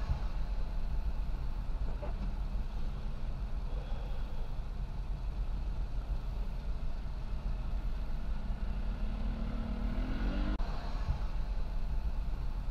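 Road traffic heard from inside a car: a steady low rumble of engines and tyre noise, with an engine revving up, rising in pitch, about nine to ten seconds in.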